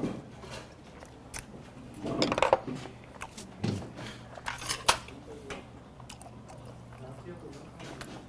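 Eating sounds of a man chewing raw fish (sashimi), with a few sharp clicks and knocks of tableware: chopsticks and a glass on the table.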